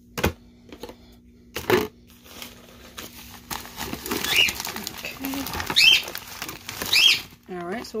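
Things being dropped and packed back into a plastic storage bin: two knocks, then plastic bags crinkling and items rustling. A pet bird calls three times in the background over the rustling.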